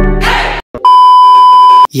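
Background music fading out, then after a brief silence a single loud, steady electronic beep about a second long.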